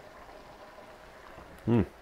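Faint, steady simmer of a pot of beans in tomato-molasses sauce cooking on a gas burner. A man's short 'mm' comes near the end.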